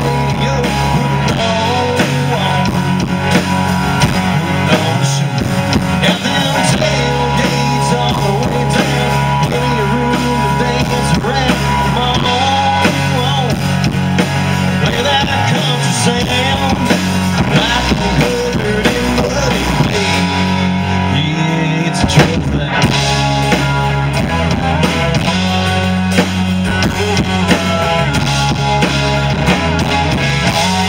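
Live country-rock band playing: electric and acoustic guitars, bass guitar and drum kit.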